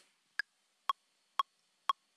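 ODD Ball app's count-in metronome: four short electronic clicks, two a second, the first higher in pitch than the other three. It is the countdown signalling that loop recording is about to start.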